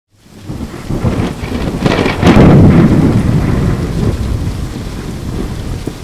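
Thunder rumbling over steady rain. It swells to its loudest about two seconds in, then slowly dies away.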